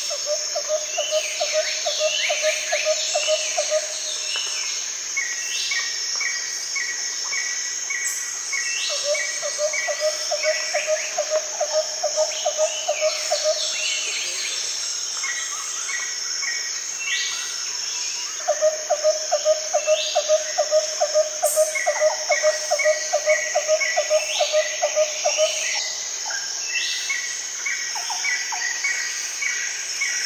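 Several birds calling over a steady high-pitched insect drone. A rapid run of low repeated notes comes three times, each lasting several seconds, among higher chirps and short runs of whistled notes.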